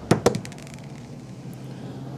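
Green translucent twenty-sided die thrown onto a tabletop: two sharp clacks a fraction of a second apart, then a quick run of smaller clicks that die away within the first second as it tumbles to rest.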